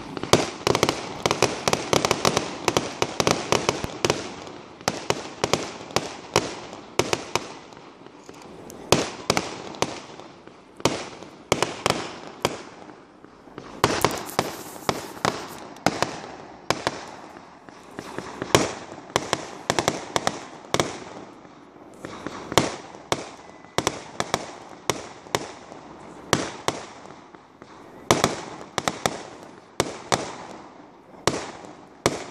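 Aerial firework shells bursting in a rapid, continuous string: sharp bangs one to three a second, each with an echoing tail.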